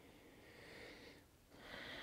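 Faint breathing of a person holding a yoga pose: one breath fading out a little past a second in, the next starting about half a second later.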